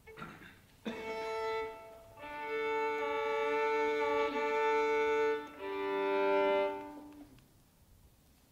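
Solo violin, bowed: a short stroke about a second in, then two long sustained double stops, two notes sounding together, the second ending and dying away about seven seconds in.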